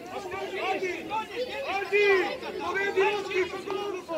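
Many children's voices shouting and calling out at once across a football pitch, high-pitched and overlapping, loudest about halfway through.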